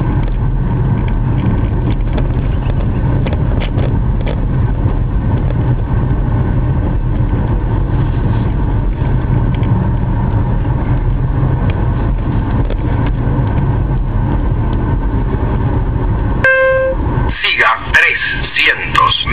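Steady low rumble of a car's engine and road noise, heard inside the cabin while driving slowly. Near the end a short horn-like tone sounds once.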